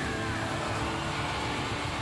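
Live rock band playing loud: a held high note slides down at the very start, then a dense, noisy wash of distorted electric guitars and crashing cymbals.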